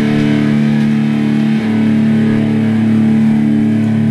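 Electric guitar holding a low chord that rings on steadily, with a brief break about one and a half seconds in.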